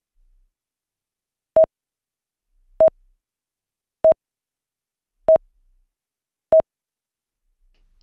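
Electronic countdown timer beeping: five short beeps at one mid pitch, evenly spaced about a second and a quarter apart.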